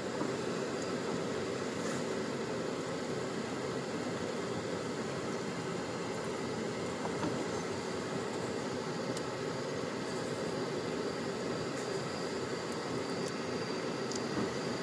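Steady rushing background noise with a few faint clicks.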